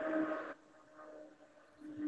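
A steady hum with a couple of held low pitches, heard through video-call audio. It cuts off about half a second in, and a similar hum starts again near the end.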